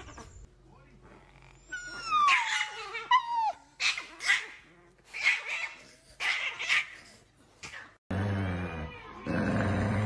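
A chihuahua in an angry fit: a couple of whining cries falling in pitch about two seconds in, then a string of sharp, snappy barks and growls.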